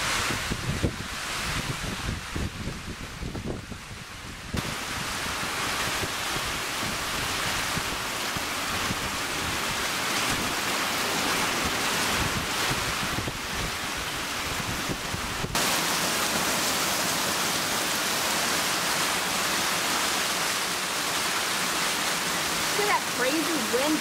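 Heavy rain falling in a steady downpour, a dense even hiss. Wind gusts buffet the microphone during the first few seconds.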